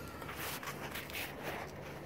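Faint footsteps and shuffling over a low, steady background hum.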